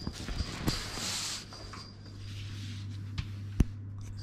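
Sheets of paper and plastic-sleeved sticker packs being handled and shuffled by hand: rustling, with a few light taps and one sharp click near the end, over a steady low hum.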